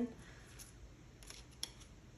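Playing-card-sized tarot cards being handled: a few faint, light clicks as a deck is picked up and a card drawn from it.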